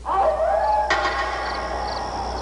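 An animal howl in a night-time scene: it rises briefly, then holds long on one steady pitch over a low steady rumble. There is a sharp click about a second in, and faint short chirps repeat high above.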